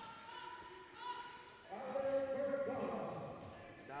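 Basketball game sounds in a gym: a ball bouncing on the court, then a stretch of shouting voices for about a second and a half in the middle.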